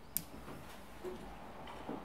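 A single sharp click just after the start, then a few faint ticks over low room noise: clicking on a laptop.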